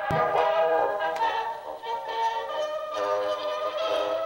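A spring-wound Edison cylinder phonograph playing a recorded tune, likely from a Blue Amberol cylinder, through its large horn. A single sharp knock comes right at the start as a sock is shoved into the horn's bell to damp the sound, the old way of turning a phonograph down.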